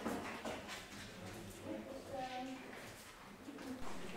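A bird's low cooing mixed with faint, indistinct voices and a few scuffs, echoing in a vaulted stone room.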